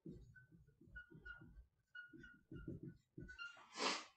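Dry-erase marker writing on a whiteboard: a run of short, faint strokes with brief squeaks. A short breathy hiss follows near the end.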